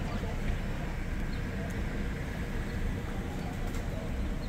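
Outdoor street ambience: a steady low rumble with faint, indistinct voices of people nearby.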